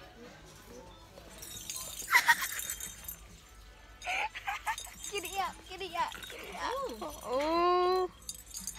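Young women's voices laughing and exclaiming, with a short sharp clatter about two seconds in and a long drawn-out call near the end.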